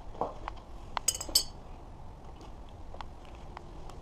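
Metal clinks and taps of a steel adjustable wrench being handled, with two bright ringing clinks a little after a second in.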